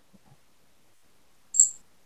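Near silence, broken by one short, soft hiss about a second and a half in.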